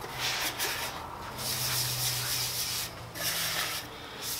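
A hand-held pad rubbed back and forth over the metal bed of a woodworking jointer, buffing off paste wax, in three scrubbing strokes of a second or so with short pauses between them. A faint steady low hum runs underneath.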